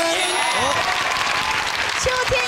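A group of people applauding, with voices calling out over the clapping.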